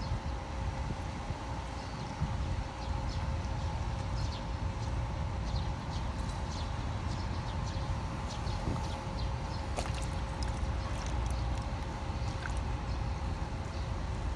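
Harbour-side ambience: a low rumble under a steady mechanical hum, with scattered faint high ticks.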